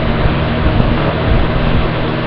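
A steady background hum with hiss, unchanging throughout.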